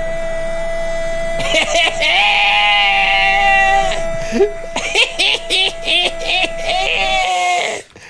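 A short music jingle marking a point scored in the quiz: one long held note with a wavering, singing voice over it, turning choppy halfway through, then cutting off suddenly near the end.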